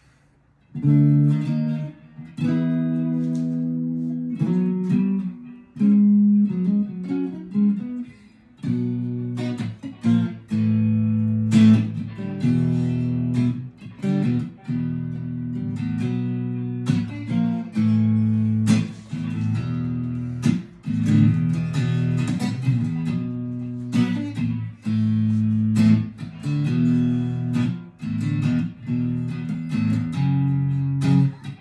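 Firefly FFST relic Stratocaster-style electric guitar on a clean amp tone with the middle pickup selected. Chords are picked and strummed and left to ring, starting about a second in.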